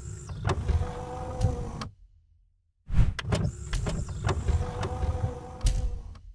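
Logo-animation sound effect: a steady mechanical hum with clicks and knocks, played twice with about a second of silence between.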